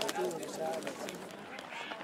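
Indistinct voices of people talking in the background, with occasional sharp pops and crackles from a wood campfire.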